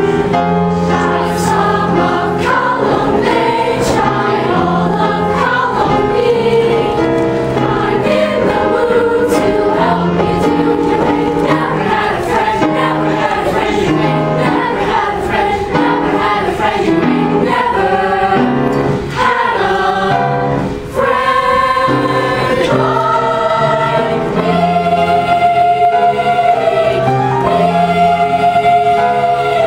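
Combined middle school choirs singing a Disney song medley in chorus, with young voices in full harmony over steady low accompaniment notes.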